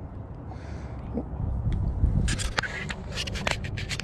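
Spinning fishing reel worked with a fish on the line: irregular clicks and scrapes from the reel and rod, crowded into the second half, over a low rumble.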